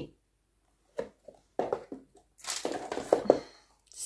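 Cardboard perfume box and heavy glass bottle being handled: a light knock about a second in, then rustling and scraping of the cardboard with a few small clicks in the second half.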